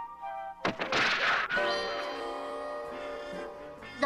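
Cartoon take-off sound effect: a sudden burst with a rushing noise about a second in, fading out, over background music that settles into a long held chord.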